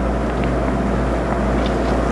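Steady low hum and rumble of background noise, with a few faint clicks.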